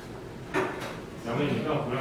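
Group of people talking in a large hall, with a sudden knock or clatter about half a second in.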